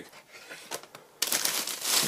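Plastic packaging crinkling as a charger in a pink anti-static bubble bag is handled and lifted out of the box. A few faint ticks come first, then steadier, louder crinkling from a little past halfway.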